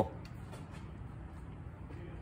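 Garage room tone: a steady low hum with a few faint light ticks early on.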